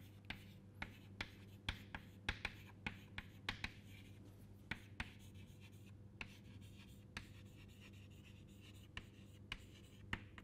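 Chalk writing on a chalkboard: quick irregular taps and scratches of the chalk stick, dense at first and sparser in the second half, over a faint steady hum.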